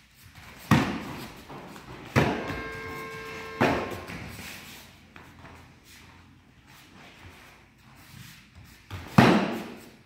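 Kicks landing on padded taekwondo chest protectors: four sharp slaps with a room echo, about a second in, near two seconds, near three and a half seconds, and the loudest near nine seconds. A steady pitched tone holds between the second and third strikes.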